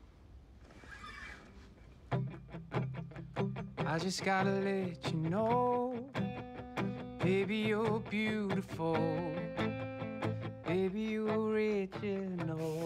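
A guitar being strummed starts about two seconds in, and a singing voice joins a couple of seconds later: a performer playing and singing one of their own songs.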